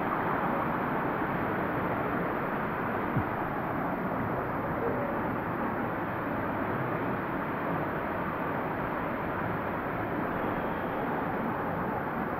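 Hot-spring water running over rocks in a stream, a steady, even rush, with one brief knock about three seconds in.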